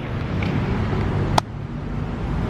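Steady outdoor noise of passing traffic and wind on the microphone, with one sharp click about one and a half seconds in, after which it is a little quieter.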